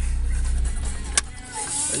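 Car engine idling with a steady low drone, then switched off and dying away about a second in, followed by a single sharp click.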